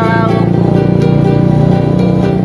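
Ukulele strumming steadily as a man's sung line ends about half a second in. A steady low drone runs underneath.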